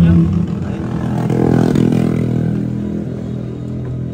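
Engine of a motor vehicle going by on the street, a steady hum that swells about a second and a half in and then fades.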